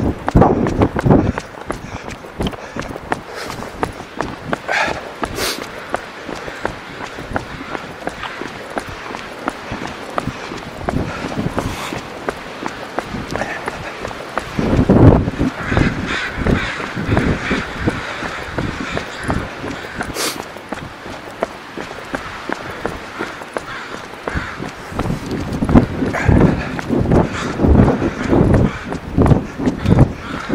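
Runners' footsteps, a steady run of foot strikes that grows louder about halfway through and again near the end, with crows cawing at times.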